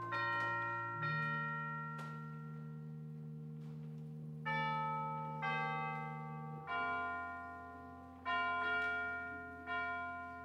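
Church chimes playing a slow melody, about seven struck notes ringing out and decaying one after another over a held low tone that shifts twice.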